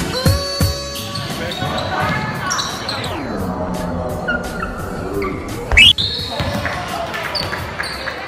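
A basketball bouncing on a gym's hardwood floor, with sneaker squeaks, voices and music mixed in, and a loud sudden sound a little before six seconds in.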